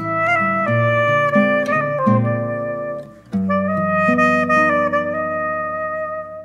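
Eagle SP502 soprano saxophone playing a slow melody over an acoustic guitar accompaniment, ending on a long held note that starts about halfway through and fades near the end.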